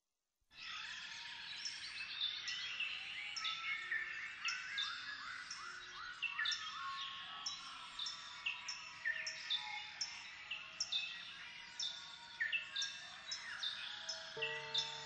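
A dense chorus of bird-like chirps, many short calls falling in pitch and overlapping, starting suddenly about half a second in over a faint hiss. It opens the track as a nature-ambience intro before the music comes in.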